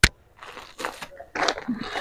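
A sharp click, then irregular rustling and crinkling of cloth and plastic-wrapped garment packs being handled, growing louder near the end.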